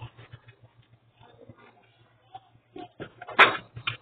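A dog shirt being handled and pulled off its plastic hanger and packaging: soft rustles, then a louder rustle with a sharp clack about three and a half seconds in.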